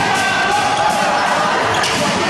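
Futsal game sounds in an echoing sports hall: scattered thuds of the ball being kicked and bouncing on the hard court, with players' shouts and spectators' voices.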